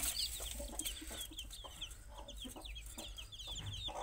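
Several newly hatched country-chicken (nattu kozhi) chicks peeping steadily: many short, high, downward-sliding cheeps in quick succession, overlapping one another.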